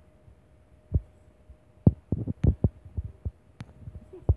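A dog's tail thumping on a bed: soft, dull thumps, one about a second in, then a quicker irregular run of about eight. A faint steady hum lies under them.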